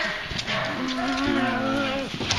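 Dogs making drawn-out, moaning vocalisations during rough play, with a long held note starting about a second in.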